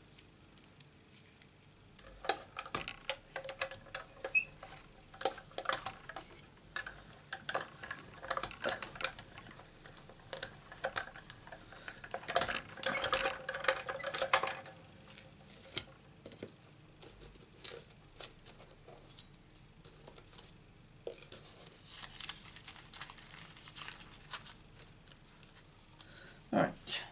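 Irregular small clicks, taps and rustles of a metal cutting die, cardstock and plastic cutting plates being handled on a craft mat. About halfway through comes a denser clatter lasting a couple of seconds as the plate sandwich is hand-cranked through a Big Shot die-cutting machine.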